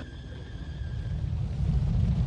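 A deep rumble that grows steadily louder, with a faint thin high tone over it for the first second and a half.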